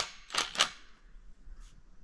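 Socket ratchet clicking in two quick strokes about half a second in, tightening a lag screw into a tree trunk.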